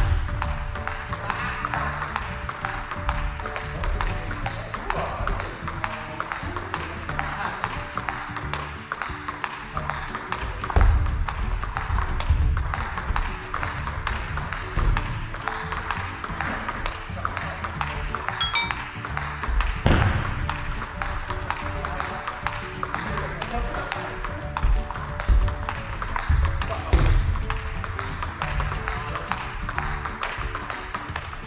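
Table tennis ball clicking back and forth between the rackets and the table in a long rally, one player hitting with a penhold bat faced with short-pimpled rubber, over background music.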